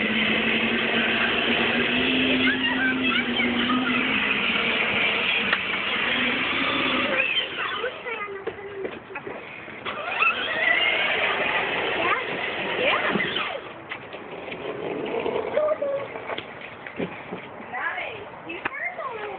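Power Wheels toy Jeep's battery-driven electric motors and plastic gearbox whining steadily as it drives over asphalt, stopping about seven seconds in, with children's voices chattering throughout.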